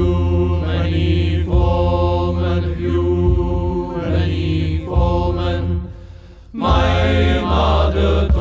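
Music: deep, wordless chanting voices held in long notes over a low bass drone, changing chord about every second, with a short dip about six seconds in.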